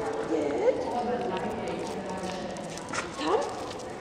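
Beagles yelping and barking in excited play, with short rising calls about half a second in and again near the end, and a few sharp clicks between.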